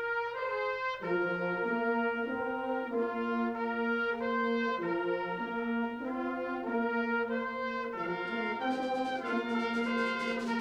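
A student wind band playing full held chords with brass to the fore, the harmony moving roughly every second. Percussion joins near the end and brightens the sound.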